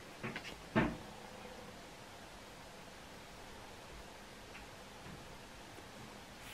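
Quiet room tone, with a few soft handling sounds in the first second as a cardboard flashcard is swapped for the next one.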